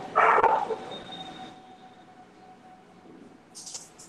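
A single short bark-like sound, like a dog's, picked up over a video-call line. It is followed by faint background hum and a brief rustle near the end.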